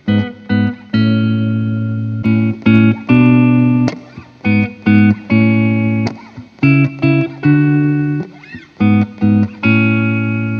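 Electric guitar playing a chord riff through Seymour Duncan Alnico II neck humbuckers, first on a Gibson Les Paul Standard, then on a Relish Mary One. Some chords are short stabs cut off quickly and others are left to ring.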